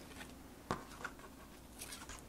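Light handling noise as a card is moved on a craft work surface: one sharp tap a little under a second in, a softer tap soon after, and faint rustles.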